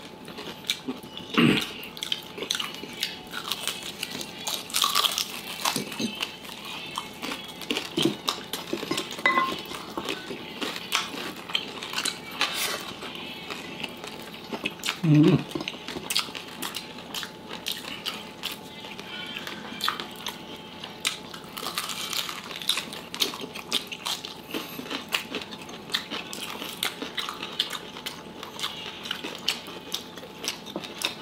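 Chewing and crunching of crispy fried pork knuckle (crispy pata) as two people eat by hand, with many small clicks and mouth smacks and scattered knocks of food and fingers on a glass dish. Two louder sharp knocks stand out, one about a second and a half in and one near halfway.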